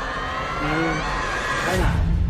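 Trailer sound design: a high whine rising steadily in pitch and building to a sudden deep impact near the end, with a voice heard over it.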